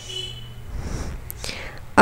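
Soft rustling of hands smoothing a folded piece of fabric flat on a table, over a faint low hum.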